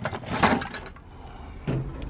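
Brief rustling and knocking handling noises as objects and a cardboard box are moved about, quieting in the middle, then a short low hum of a voice near the end.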